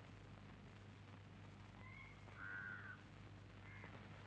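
Faint crow cawing over a steady low hum: short calls about two seconds in, a louder, longer caw just after, and another near the end.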